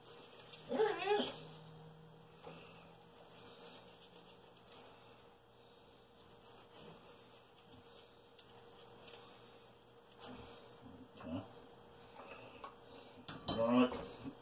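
A dog whines briefly about a second in and again near the end, with a few faint clinks of dishes and utensils in between.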